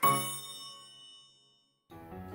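A single bell-like chime struck once, the closing note of an intro jingle, ringing out and fading away over about a second and a half.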